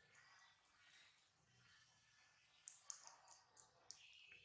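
Faint, short scratchy clicks of a nail file (emery board) being stroked across a baby monkey's tiny fingernails, coming in a quick run of strokes near the end.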